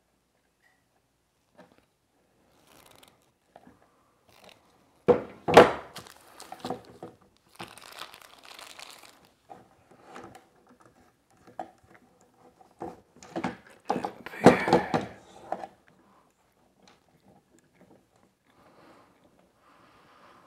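Handling noise from wiring inside a plastic electrical box: wires and twist-on wire nuts being worked by hand, with scattered clicks and crinkling. Two louder clusters of sharp knocks come about five seconds in and about fourteen seconds in.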